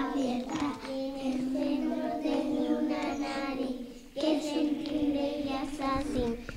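A group of young children singing a short rhyme together in unison, with a brief break about four seconds in.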